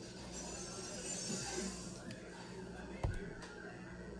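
Soft rubbing of a cloth over a decal-wrapped tumbler, then a single low thump about three seconds in, likely a footstep in the house.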